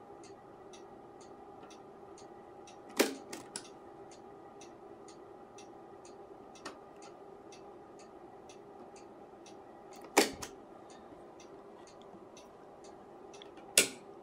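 Sharp clicks of a Tektronix 475 oscilloscope's rotary front-panel switches being turned: a click with two smaller ones about three seconds in, a double click about ten seconds in, and one more just before the end. Under them, a faint steady hum and a faint regular ticking, about two ticks a second.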